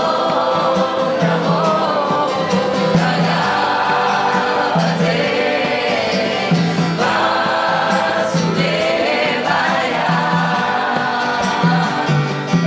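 Kirtan: voices singing a devotional mantra together over strummed acoustic guitars, with a low note pulsing steadily underneath.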